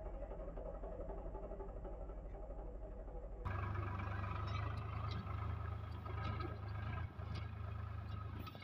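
Swaraj 735 FE tractor's three-cylinder diesel engine running under load as it drags a land-leveling scraper blade through dry soil. About three and a half seconds in, the sound jumps to a louder, fuller engine drone.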